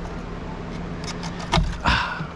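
Plastic OEM fuel pump assembly knocking and rattling against the fuel tank opening as it is turned sideways and worked out, with two sharper knocks in the second half.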